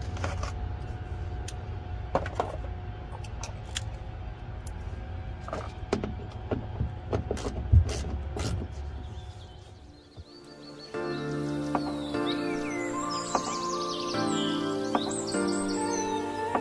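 Scattered clicks and knocks of hands and a tool working the screws out of a truck's plastic wheel-well trim, over a low steady rumble, with one louder knock near the middle. About ten seconds in this fades and background music takes over.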